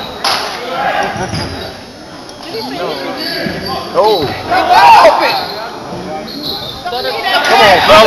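Basketball bouncing on a hardwood gym floor, with spectators' shouts ringing through a large hall; the shouting is loudest about four to five seconds in and again near the end.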